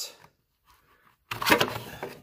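A sudden plastic scraping clatter about a second and a half in, from the planer's orange plastic tool holder, which carries a hex key, being unclipped and pulled off the housing.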